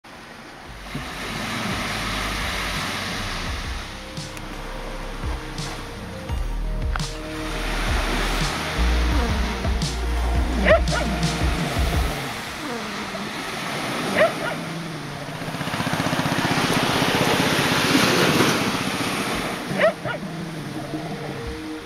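Surf washing on a sandy beach with wind rumbling on the microphone, the wash swelling louder near the end, and a few short rising calls cutting through.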